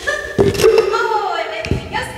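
A woman's voice talking in long, gliding tones off the microphone, with a few sharp knocks, one near the start, one about half a second in and one near the end.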